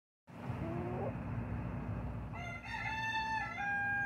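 A rooster crows: one long held crow that begins about two and a half seconds in and steps down slightly in pitch near the end, after a short faint call near the start.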